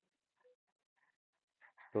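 Near silence with a few faint, brief noises, then a man's voice beginning right at the end.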